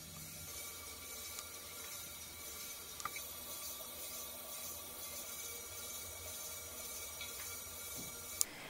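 Electric pottery wheel spinning while a loop trimming tool shaves thin ribbons of leather-hard clay off a pot: a faint, steady scraping hiss over a low motor hum, with a couple of small clicks.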